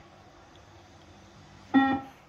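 A single short electronic beep from a beep test (multi-stage fitness test) recording, near the end. The beep marks the end of a shuttle, the moment the runners must reach the line, and the next level call follows it.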